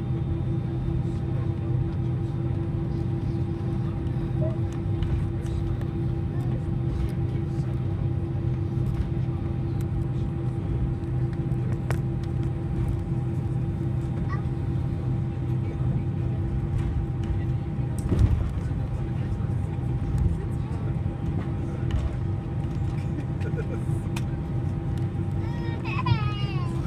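Airliner cabin noise while taxiing: a steady low rumble with a constant hum from the engines and cabin systems. There is a single brief knock about 18 seconds in.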